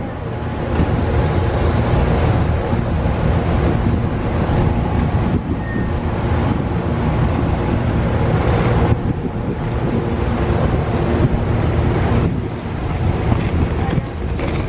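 Amtrak Superliner bilevel passenger cars passing close by at speed: a steady rumble of steel wheels on rail with wind buffeting the microphone, the level dipping briefly twice.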